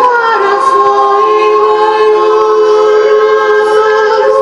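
Female a cappella vocal ensemble singing in close harmony, several voices holding long sustained notes; right at the start the voices slide down into a new chord and then hold it.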